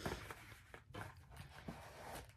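Faint handling sounds: soft rustles and a few light taps as a cross-stitch project and its paper chart are moved about on a table.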